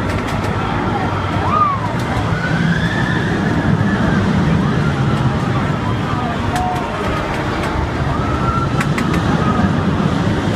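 Riders on a spinning Troika ride whooping and shrieking now and then, over a steady rush of ride noise and wind on the microphone.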